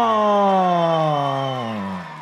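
A ring announcer's voice holding the last vowel of a boxer's name in one long drawn-out call, sliding steadily down in pitch and fading near the end.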